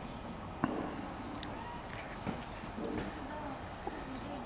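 Faint background voices, with one sharp click a little after the start and a few lighter ticks later.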